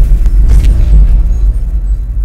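Loud, deep rumbling sound effect, sustained and slowly fading near the end.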